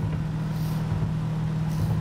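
Inside the cabin of a 1937 Ford five-window coupe hot rod cruising at highway speed: steady engine hum with road noise.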